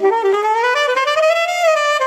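Alto saxophone playing a jazz melody alone, one line of notes climbing step by step to its highest note about one and a half seconds in, then starting back down.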